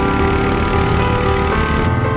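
Quad bike engines running under background music with held, slowly changing notes.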